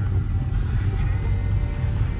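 Low, steady road rumble inside an Audi's cabin as it drives slowly along a rough dirt road, with music playing faintly over it.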